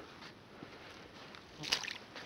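Faint outdoor background noise in a pause between speech, with a brief soft sound about three quarters of the way through.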